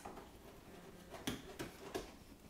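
Parts and cardboard packaging being handled inside a drink machine's shipping carton: faint rustling with a few light knocks in the second half.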